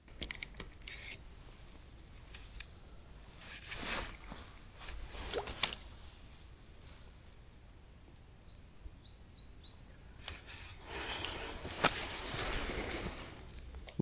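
Quiet outdoor ambience with scattered rustling and clicking handling noises, louder near the end. A little past the middle a bird gives a quick run of about five short, falling high chirps.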